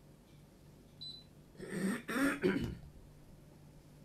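A man clearing his throat in two rough bursts about halfway through, preceded by a brief high beep about a second in.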